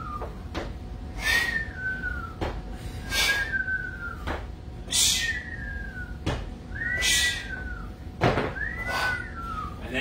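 A short whistle, six times about two seconds apart: each begins with a brief hiss of breath and turns into a single thin tone that rises a little and then falls.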